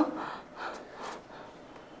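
A woman's spoken line cuts off at the very start, followed by a pause with a couple of faint breaths.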